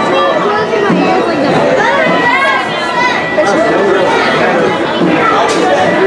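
Indistinct chatter of several people talking at once among the riders.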